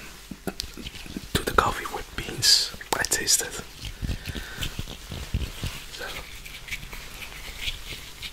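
Soft whispered speech close to the microphone, breathy and interspersed with short mouth clicks.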